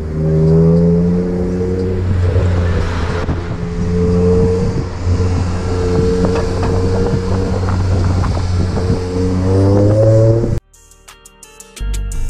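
Car engine droning at low revs, heard from inside a car on the move; the pitch rises near the end as it revs up, then cuts off suddenly.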